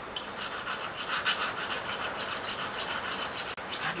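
A nail file rasping quickly back and forth over the point of a steel nail, several strokes a second, smoothing the rough-edged tip so it works as an awl.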